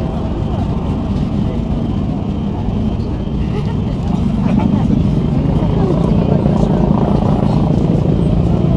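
Traffic noise from a motorcade of cars and police vehicles passing on a city street, a steady rumble of engines and tyres that grows louder about halfway through.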